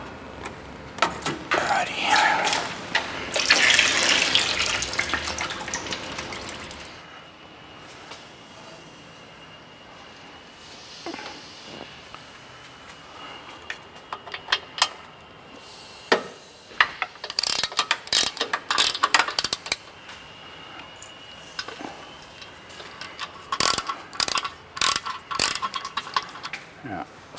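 Hand ratchet clicking in quick bursts as bolts are undone under a car engine, busiest in the second half. It is preceded by several seconds of a hissing, splashing rush.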